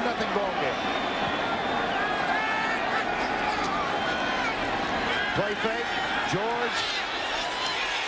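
Stadium crowd noise from a football broadcast, a dense steady din with scattered shouts, brightening near the end as a touchdown pass is caught. A commentator briefly calls the quarterback's name about five seconds in.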